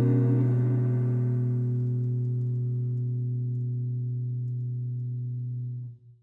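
The last chord of a jazz ballad, from guitar and double bass, held and slowly dying away, its upper notes fading first, then cut off abruptly at the very end.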